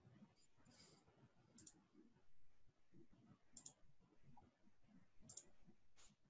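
Near silence, broken by faint computer mouse clicks: about three quick double clicks spread through the stretch.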